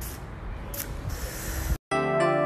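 Steady noise of a phone recording while walking, with a couple of brief scuffs, cutting off suddenly near the end.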